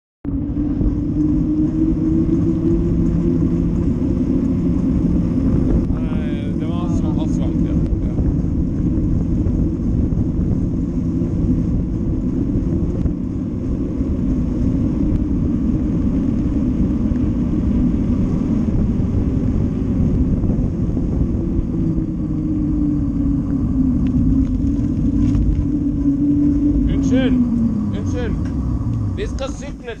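Wind buffeting the microphone of a camera on a moving bicycle, a loud, steady rumble, with a humming tone from the ride that falls in pitch near the end as the bike slows.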